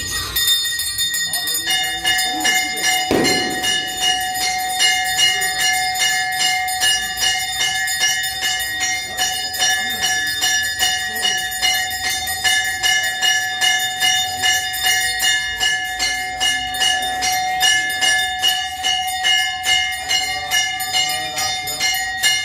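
Hindu temple bells ringing in an even, rapid rhythm of about two to three strokes a second, each stroke ringing on, for the aarti offering of a camphor lamp before the deity.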